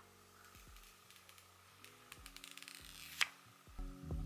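Plastic protective film being peeled off a new iPhone, faint crackling with one sharp click about three seconds in, over soft background music.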